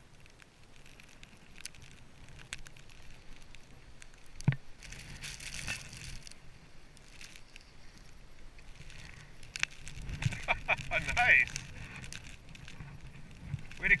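Skis sliding and turning on snow, with scattered scrapes and clicks and a low rush of wind on the microphone; a voice calls out briefly near the end.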